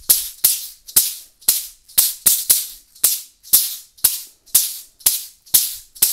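Percussion-juggling shakers caught with sharp grabs, each catch a crisp shaker hit. They fall in a steady rhythm of about two a second, with an occasional quick pair.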